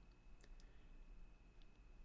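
Near silence: room tone with a few faint short clicks and a faint steady high-pitched tone.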